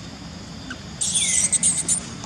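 A macaque screaming: a loud, shrill cry starting about a second in and breaking into several sharp stabs for about a second.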